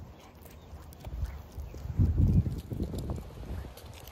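Footsteps on a paved street while walking, heard as low, irregular thumps that are loudest about halfway through.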